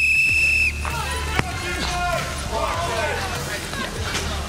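A whistle blown once in a steady blast of under a second to start the timed round, then a single sharp thud of a football being struck about a second later, with music and shouting behind.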